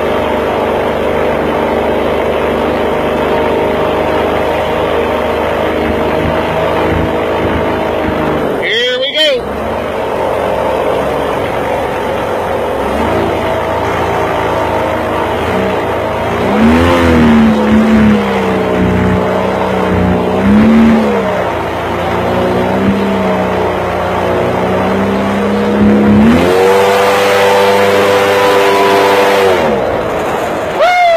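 Boat engine running under way across shallow water, holding steady, easing off briefly about nine seconds in, then the revs swinging down and up several times and climbing near the end.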